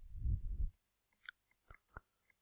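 A soft, low rustle close to the microphone for about half a second, then a few faint, scattered clicks of a stylus tapping on a pen tablet as writing begins.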